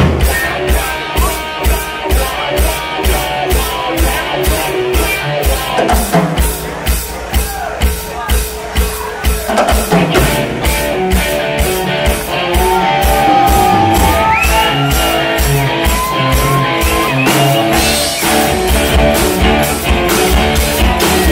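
A live southern rock band playing an instrumental passage: drum kit keeping a steady beat of about two hits a second under bass and electric guitars. In the second half a lead electric guitar bends notes up and down over the band.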